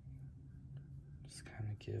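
Quiet room tone with a faint low hum, then a breath and a man's voice starting to speak near the end.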